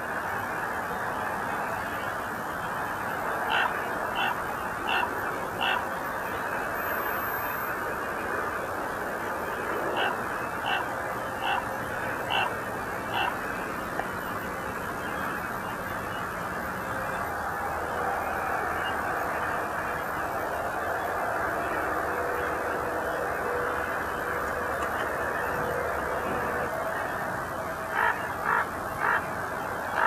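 Crows cawing in short series of four or five calls, each call about two-thirds of a second apart, three series in all, over a steady rushing background noise.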